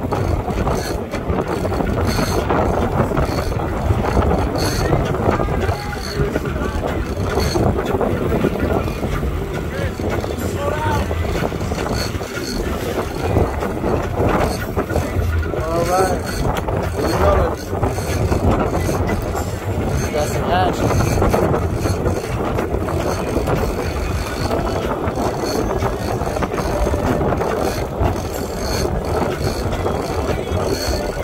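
Sportfishing boat's engine running under a steady wash of wind on the microphone and sea noise, with short indistinct voices now and then in the middle.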